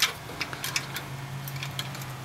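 Small metal pins being worked out of the trunnion caps on a model cannon carriage with a brass barrel: one sharp click at the start, then a few faint ticks.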